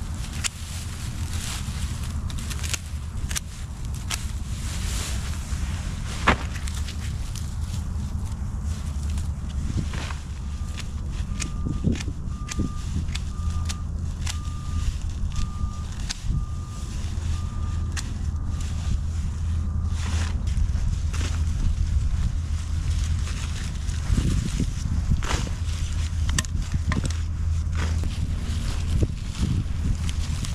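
Dead, dry annual fountain grass rustling and crackling as it is pulled out of concrete pots by hand, with scattered sharp snaps, over a steady low hum. A repeating high beep sounds for about ten seconds in the middle.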